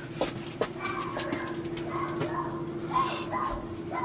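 A dog whining in a run of short, high, wavering calls from about a second in.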